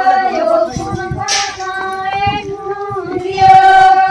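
A group of women singing a song together in high voices, holding long notes and sliding between them.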